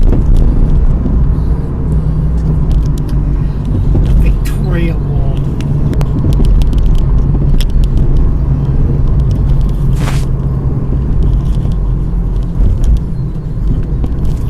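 Car engine and road noise heard from inside the cabin while driving: a steady low rumble, with a few light clicks and a brief hiss about ten seconds in.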